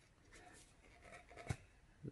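Hands working at the press-on lid of a small metal tin, faint rubbing, then a single sharp click about one and a half seconds in as the lid comes free.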